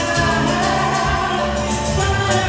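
Live salsa band playing: a woman singing held notes over electric bass, drum kit and percussion keeping a steady beat.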